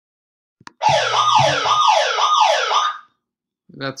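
An electronic alarm warbling, its pitch swooping down and back up about twice a second for some two seconds, set off by mains power coming back on after an outage. A short click comes just before it.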